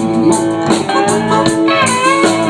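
Live blues band playing an instrumental fill between vocal lines, led by electric guitar over the band.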